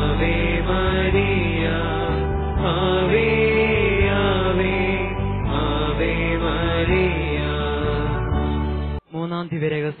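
Malayalam devotional rosary chant sung over music with a steady low held drone. The music stops abruptly about nine seconds in, and a man's voice starts to speak.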